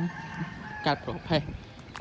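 A rooster crowing in the background: one long, faint, held call that fades near the end, with two short spoken syllables just under a second in.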